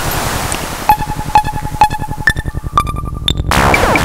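Serge Paperface modular synthesizer playing an electronic patch. A noisy wash gives way about a second in to a regular pulse, about two clicks a second over a fast low buzz, with a held pitch that steps higher near the end. Then a noisy burst with falling sweeps begins.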